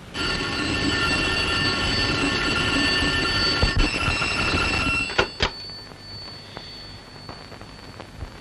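A telephone bell ringing continuously with a dense metallic jangle for about five seconds, then cutting off, followed by two sharp clicks.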